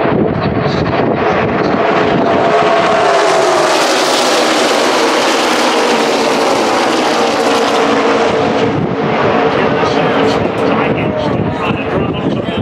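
A pack of NASCAR Xfinity V8 stock cars racing past at speed. The engines' roar swells to its fullest a few seconds in, then the pitch slides down as the pack passes and pulls away.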